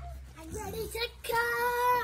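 A young girl singing a short phrase that ends on a long held note, which slides down as it stops.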